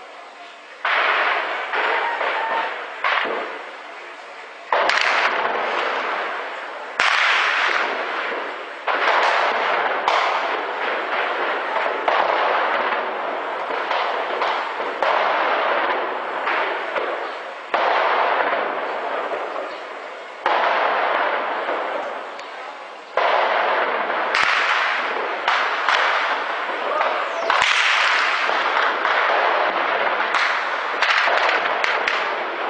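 Heavy gunfire from tanks on a ridge: a loud report every two to three seconds, each trailing off in echo, the first about a second in.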